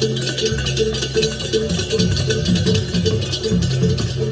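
Balinese gamelan percussion playing: a steady pulse of small gong strokes about three a second over lower gong and drum tones, with rapid cymbal clashing throughout.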